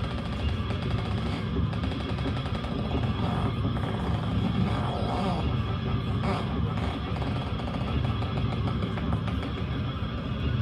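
Live rock band playing: loud, dense distorted guitars and drums with a heavy low end, in an audience recording of a club show.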